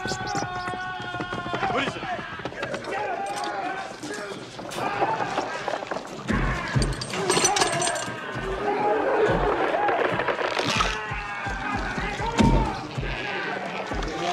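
Horror film soundtrack: a high, wavering cry in the first two seconds, then a chaotic mix of voices, crashes and heavy low thumps over music from about six seconds in, loudest near the end.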